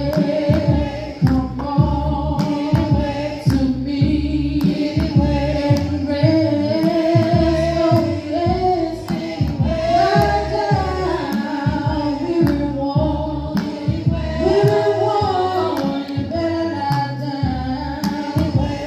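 Congregation singing a gospel hymn, men's and women's voices together, with held and gliding notes over a steady beat of sharp taps.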